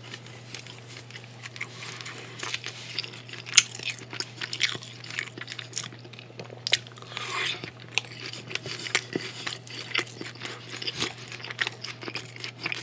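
Close-miked chewing and biting of cheesy bacon-wrapped filet steak and broccoli: irregular wet clicks and crackles, one sharp crack about three and a half seconds in, over a steady low hum.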